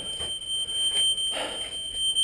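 A continuous high-pitched electronic alarm tone, held at one pitch throughout, with shuffling and rustling of movement beneath it.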